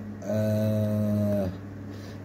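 A person's voice holding a drawn-out hesitation vowel, like a long 'ehhh', at one steady pitch for about a second, over a steady low hum.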